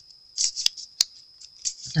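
A small folded paper slip being unfolded in the fingers: light paper crinkling and rustling, with two sharp clicks within the first second.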